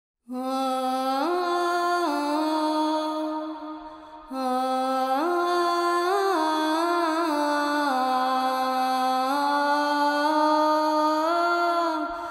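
A solo voice sings a slow, melismatic phrase with no audible accompaniment, holding long notes that slide up and down between pitches. The voice pauses briefly about four seconds in, then carries on.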